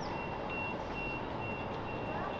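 Vehicle reversing alarm beeping steadily, about two and a half high single-tone beeps a second, over the hum of city street noise.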